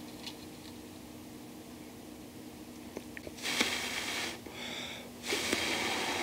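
Faint room tone with a couple of light ticks, then two loud, hissy breaths through the nose about three and a half and five and a half seconds in, with a faint whistle between them.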